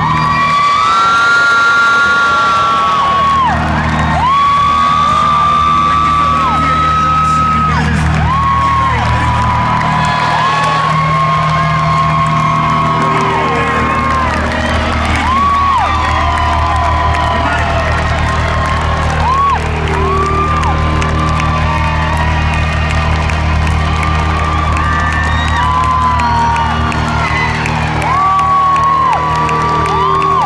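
Live band music in a large arena, with steady bass and long held melodic notes, as the crowd cheers and whoops over it.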